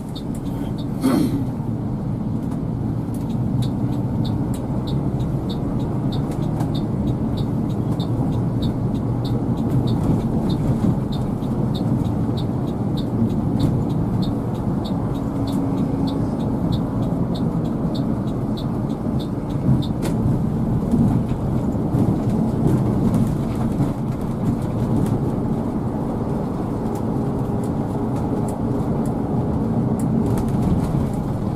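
Inside the cabin of a three-axle coach under way: a steady diesel engine and road rumble. About a second in there is a brief loud sweep, falling in pitch, like a vehicle passing close. Over roughly the first half, a regular high tick sounds about twice a second.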